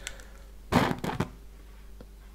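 A person blowing out three birthday candles on a cupcake: one short puff of breath about half a second long, starting about three-quarters of a second in.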